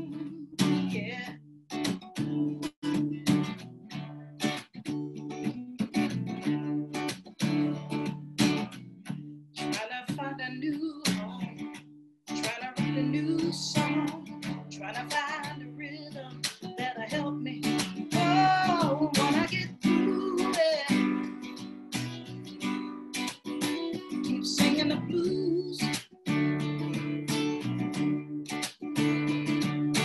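Acoustic guitar strummed in a steady rhythm, the opening of a song. Partway through, a voice sings over it with a wavering vibrato.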